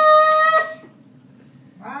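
Shofar blown in one long, steady note that lifts slightly in pitch just before it cuts off about half a second in.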